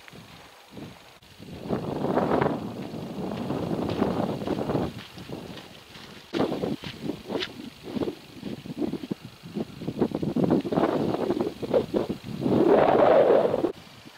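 Wind buffeting the microphone in gusts, with footsteps on a sandy gravel path at about two steps a second through the middle part.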